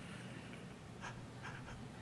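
Faint, quiet laughter: a few soft breathy chuckles about a second in over low room hiss.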